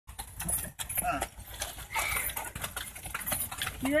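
Horses' hooves clip-clopping on a dirt road as a horse cart passes close by, with short sharp knocks throughout. Brief voices are heard, and a person speaks near the end.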